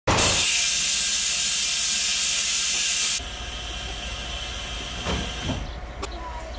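Compressed air hissing loudly from a stationary passenger train's air brakes, cutting off suddenly after about three seconds. A quieter low rumble from the train runs on afterwards.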